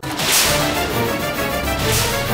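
A dramatic whoosh sound effect at the cut, swelling and peaking about half a second in, followed by the serial's background score playing on.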